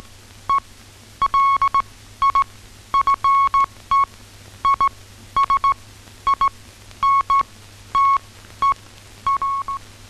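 Morse code: a single steady high beep keyed on and off in short and long pulses, a wireless telegraphy message coming through.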